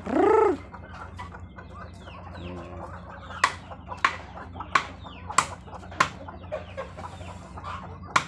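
Chickens and Muscovy ducks feeding: one loud chicken call at the very start, rising then falling in pitch, and a soft cluck about two and a half seconds in. From the middle on come sharp taps of beaks pecking at the ground, roughly every two-thirds of a second.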